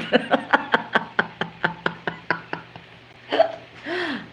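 A woman laughing in a run of short breathy bursts, about five a second, fading out over two and a half seconds, then a brief voiced laugh sound near the end.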